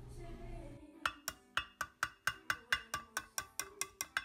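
A quick, even run of sharp wood-block-like clicks, about four a second, starting about a second in, with silence between them: the percussive opening of a background music track. Before it, a faint low hum of room tone.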